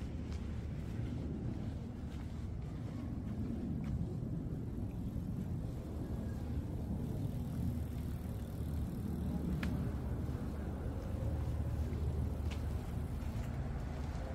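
Steady low outdoor rumble with a few faint ticks.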